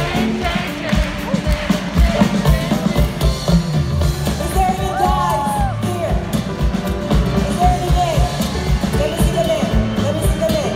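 Live band playing a song, a drum kit keeping a steady beat under bass, with a woman's voice singing long, gliding notes.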